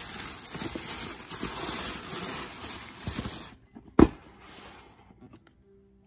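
Thin plastic bag rustling and crinkling as it is handled and a box is pulled out of it, followed by a single sharp knock about four seconds in, then quiet.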